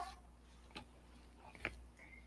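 Near silence in a pause between speech, broken by two faint short clicks, one just under a second in and one near the end.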